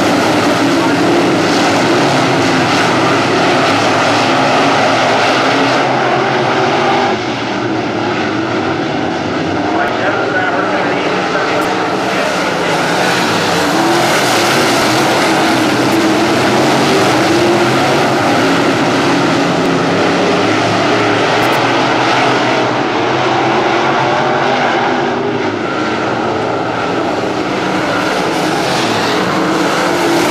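A field of dirt-track sportsman race cars running at racing speed, their engines loud and continuous as the pack goes around the oval.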